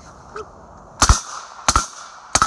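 Two gunshots from a rifle, about two-thirds of a second apart, over a steady background hiss.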